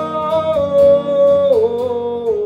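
A man's voice singing one long wordless note for about a second and a half, then stepping down to a lower note, over a strummed acoustic guitar.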